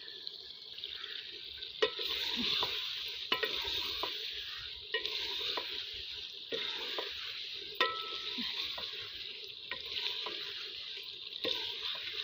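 A spatula stirring and scraping a thick curry in an aluminium pot with a steady sizzle, the spatula knocking against the pot about every second and a half. It is being stir-fried (bhuna) as its cooking water dries off.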